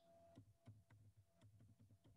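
Near silence with faint, scattered computer-keyboard keystrokes as a word is typed, under a faint steady tone.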